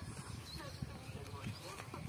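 Faint, irregular dull thumps of a wooden stick pounding a damp earthy mixture in a small steel bowl set on sand.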